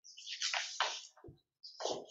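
Sheets of paper rustling as they are handled and turned, in about four short rustles with brief pauses between them.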